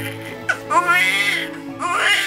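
A newborn baby crying: one long wail about half a second in and another starting near the end, over steady background music.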